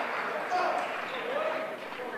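Indistinct voices of players calling out in a gymnasium, with a single thud of a volleyball bounced on the hardwood floor about half a second in.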